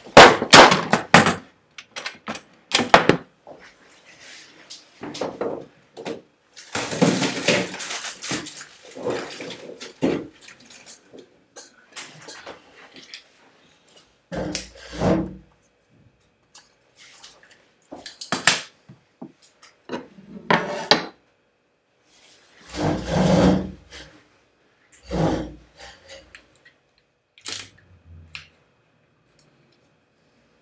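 Tools and objects being handled and set down on a wooden workbench: irregular knocks and clatter with short rummaging stretches, the loudest knocks right at the start and again near the end.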